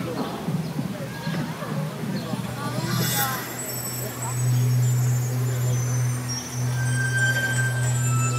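Spectators chattering in the stands, then music over the stadium's loudspeakers starting about halfway through with a long, low held note and faint high tones above it.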